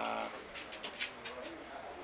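A man's drawn-out hesitation sound falling in pitch and trailing off, then a pause with a few faint mouth clicks.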